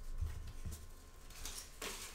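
Faint handling noises of someone rummaging among craft supplies: a couple of soft knocks in the first second and light rustling, with a short louder rustle near the end.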